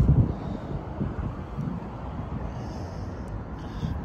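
Wind buffeting the microphone: a low, uneven rumble, strongest at the very start and then steadier.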